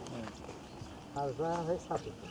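A person's voice calls out briefly, about halfway through, over a low outdoor background.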